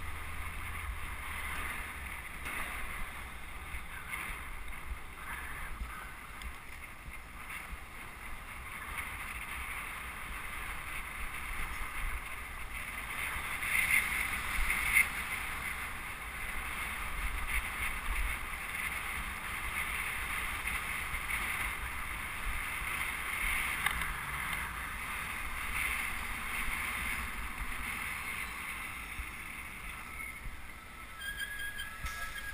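Wind rushing over the microphone of a camera on a moving bicycle, over a low rumble of road and traffic noise, swelling louder for a moment about halfway through.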